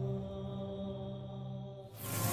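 Background music: a low, sustained drone of held tones, fading away near the end.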